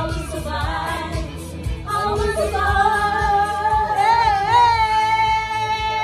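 A woman singing into a microphone over loud backing music with a beat, holding one long note through the second half.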